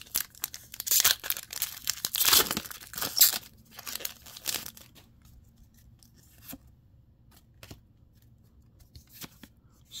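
A foil Pokémon booster-pack wrapper torn open and crinkled in the hands, a dense crackling that lasts about three and a half seconds. After it come a few soft clicks as the cards are slid out and handled, then it goes quiet.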